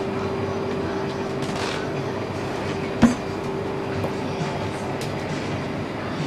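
Steady background rumble with a constant hum tone, and one sharp knock about three seconds in.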